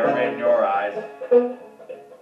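A man's sung line trailing off within the first second over banjo accompaniment, then the banjo picked alone for a few notes.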